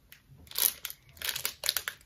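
Clear plastic packaging crinkling as it is handled, in a string of short, irregular rustles.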